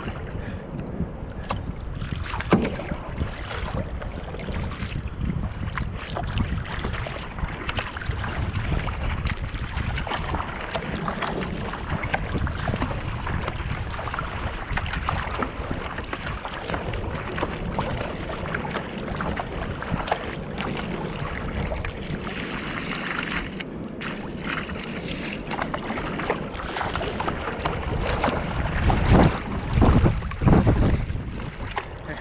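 Water splashing and sloshing against the bow of a Fenn Bluefin-S surfski moving through choppy water, with wind on the deck-mounted action camera's microphone. The splashing grows louder near the end as spray comes over the bow.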